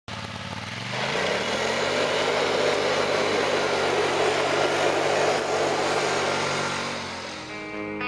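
Polaris ATV engine revving up about a second in and held at high revs while its rear wheels spin on gravel, with the hiss of spraying stones over it. The engine eases off near the end.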